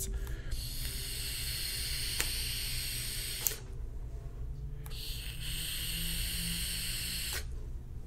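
Sub-ohm vape being puffed: a Kanger Subtank with a 0.6 ohm coil at 35 watts, its airflow and firing coil giving a steady hiss for about three seconds, then, after a pause of about a second and a half, a second hiss of about two seconds as the vapour is drawn and blown out.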